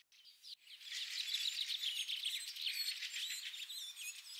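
Birds chirping faintly: many quick, high chirps overlapping one another, starting about half a second in.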